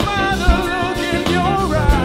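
Live soul band playing, with the lead singer holding a drawn-out, wavering vocal line over bass, keys and drums; the bass drum hits twice, about half a second in and near the end.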